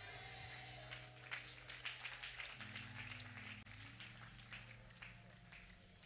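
Faint scattered clapping and low murmur from a seated audience in a hall, over a low sustained hum.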